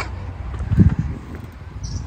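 Low rumble of wind on the microphone, with one brief low thump a little under a second in.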